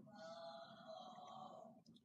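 Near silence: faint room tone, with a faint steady tone held for most of the time that stops shortly before the end.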